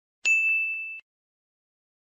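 Notification-bell 'ding' sound effect from a subscribe-button animation: a single bright bell tone strikes about a quarter second in, rings steadily while fading slightly, and cuts off suddenly at about one second.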